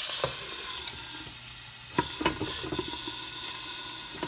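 Chicken breasts frying in butter in a non-stick pan under a glass lid: a steady sizzle, softer now the lid is on. Two sharp knocks of the lid, one near the start and a louder one about halfway through.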